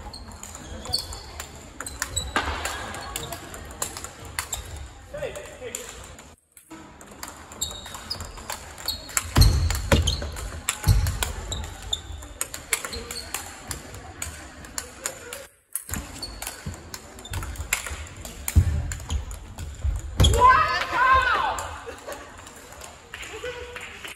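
Large-ball table tennis rallies in a big sports hall: the light ball clicking off rackets and table again and again, with hits from neighbouring tables and hall chatter behind. A voice rises briefly near the end, and the sound cuts out twice for a moment.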